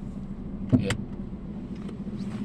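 Car engine idling, a steady low hum heard inside the cabin, with one brief sharp sound a little under a second in.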